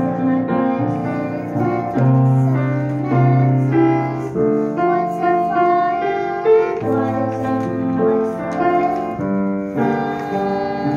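A young girl singing a slow song solo with piano accompaniment, holding long notes.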